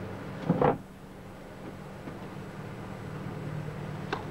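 Quiet tennis-court ambience on an old TV broadcast between points, over a steady low hum. There is one brief sound about half a second in.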